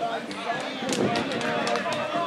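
Several people talking and calling out at once, with no clear words, and a few short sharp knocks in the middle of it.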